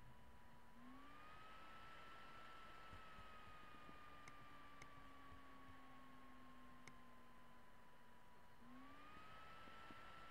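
Near silence: a faint steady electrical whine that rises in pitch about a second in, slowly sinks, and rises again near the end, with a few faint clicks.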